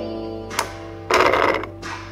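Toy slot machine playing a tinny electronic jingle of beeping notes. Its metal body clatters briefly about half a second in, then again, louder and longer, just after a second as it is picked up.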